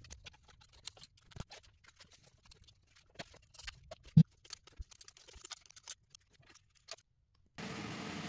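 Faint scattered clicks and taps of small metal parts and tools being handled on an engine, with one louder knock about four seconds in.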